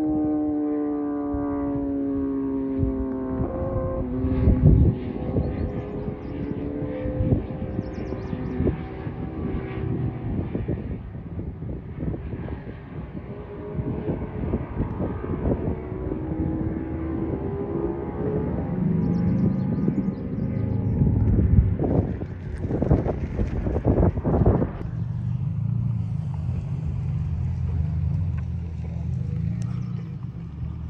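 Motorcycle engine on the road far below, its pitch falling and rising as it rides through the curves. Irregular gusts of low rumble come and go, loudest a little past the middle.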